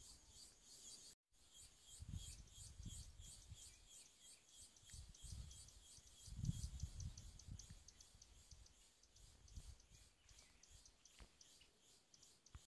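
Near silence with faint, high, rhythmic insect chirping, about four or five chirps a second, and a few low rumbles on the microphone, the strongest about six and a half seconds in.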